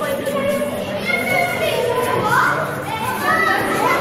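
Children and adults talking and calling out over one another, with high children's voices rising to the top about two seconds in.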